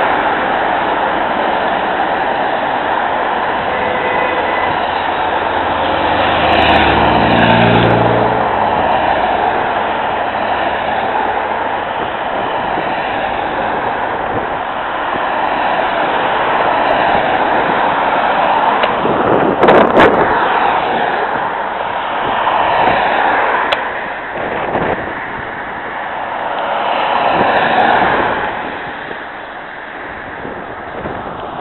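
Cars and vans driving past close by one after another, a steady rush of engine and tyre noise that swells as each vehicle goes by. About seven seconds in, one engine's pitch drops as it passes, and there is a brief loud rush near twenty seconds in.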